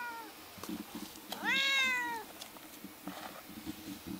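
A domestic cat meowing: one short call trailing off at the start, then a longer, louder meow about a second and a half in that rises and falls in pitch.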